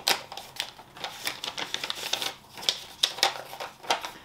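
Folded slips of paper being unfolded and handled, giving irregular crisp rustles and crackles, with a sharp one at the start.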